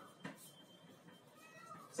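Chalk writing on a blackboard, very faint: a light tap about a quarter second in, then a few thin squeaky tones near the end.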